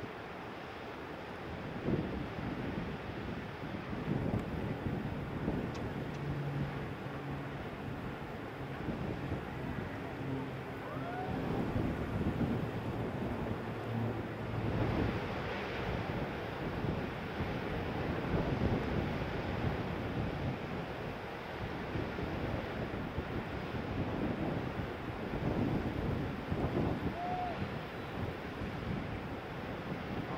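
Wind gusting on the microphone over a steady wash of ocean surf breaking on the beach.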